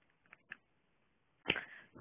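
Two faint taps, then about one and a half seconds in a sudden knock with a brief rustle as the phone is handled.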